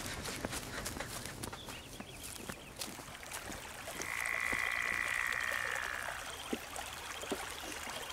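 Frogs croaking in a swampy sound-designed ambience, with a steady hissing tone that swells in about halfway through and fades out a couple of seconds later.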